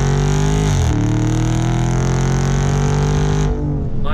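Exhaust of the naturally aspirated 6.4-liter HEMI V8 under acceleration, recorded at the tailpipe. The engine note climbs, drops sharply about a second in as the automatic shifts up, then climbs slowly again before dropping shortly before the end.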